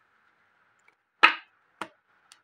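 A deck of playing-card-sized fortune-telling cards knocked down against a woven placemat on a wooden table: two short knocks, the first a little over a second in and louder, the second fainter just before the end.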